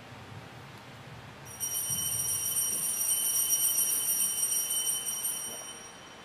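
Shaken altar bells: a bright, high, trembling ring starts about a second and a half in, holds for about four seconds, then fades away.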